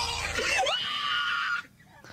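A person screaming at a high, shrill pitch for about a second and a half, then cutting off suddenly.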